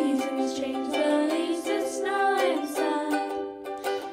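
Young girls singing a song into microphones, accompanied by a ukulele, in a small room.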